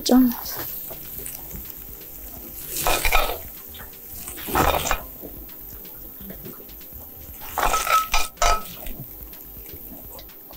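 Frying pan scraped and knocked as cooked beef strips and their oil are emptied out onto a flatbread. There are three short scraping clatters, about three seconds in, just before halfway, and near the end; the last has a brief ring.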